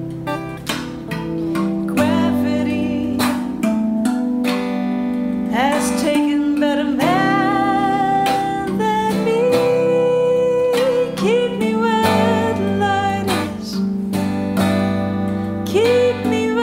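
Rav drum (a tuned steel tongue drum) ringing low notes under a clean electric guitar, with a woman singing long held vocal lines over them.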